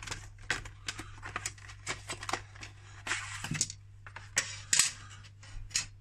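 A cardboard retail box being opened and its plastic frame pieces handled and set down on a tabletop: a run of sharp clicks and taps, with a brief rustling scrape about three seconds in.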